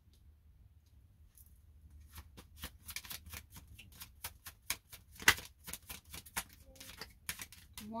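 A deck of astrology cards being shuffled by hand. It starts quietly, then comes a run of sharp, irregular card clicks and snaps, several a second, loudest a little past five seconds in.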